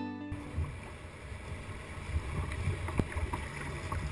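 Background music with a plucked string instrument cuts off just after the start. Then comes the sound of a sit-on-top kayak moving through choppy water into the surf: water sloshing against the hull and wind buffeting the bow-mounted camera's microphone, with a few small splashes, one sharper about three seconds in.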